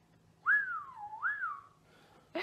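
A person whistling a short swooping phrase about a second and a half long: the pitch rises, dips low, rises again and then falls away.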